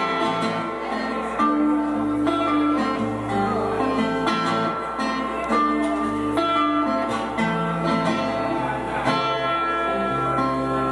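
Solo acoustic guitar playing an instrumental passage of picked chords that change about once a second, with no voice.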